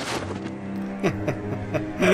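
A man chuckling in a few short bursts over a steady low, humming drone.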